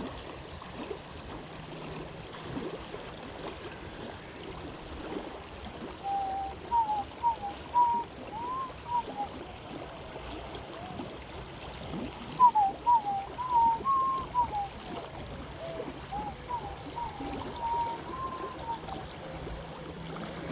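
River water flowing steadily as a constant rushing. About six seconds in, and twice more later, come groups of short whistled notes that slide up and down in pitch.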